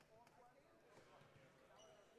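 Near silence: faint, distant voices of people talking in a large gym hall, with a faint knock about a second in.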